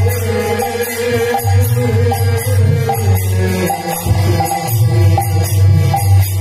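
Odia Hari naam sankirtan: a man singing the holy names over a harmonium, with small brass hand cymbals (gini/kartal) clashing in a steady rhythm.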